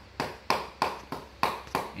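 Claw hammer striking a scrap piece of vinyl plank used as a tapping block, six even taps at about three a second, knocking a luxury vinyl plank into its locking joint.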